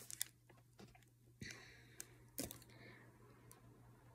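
Faint rustling and a few soft taps from the pages of a hardcover book being leafed through, near silence in between.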